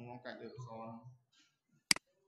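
Speech for about a second, then a single sharp computer mouse click near the end.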